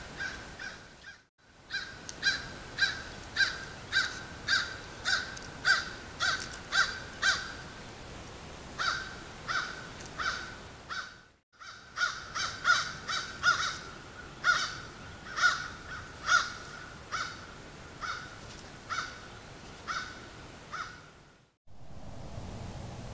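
Gray foxes calling: runs of short, squeaky barks, about two a second, repeated on one pitch.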